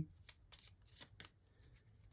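Faint, scattered clicks and ticks of tarot cards being handled, over a quiet room hum.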